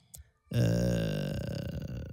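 A drawn-out, low, throaty voice sound, starting about half a second in and fading away over a second and a half.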